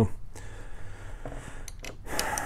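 Handling noise of small metal mounting hardware (a nut, washers and a wing nut) being picked out by hand: a faint tick early, then two sharp ticks close together near the end.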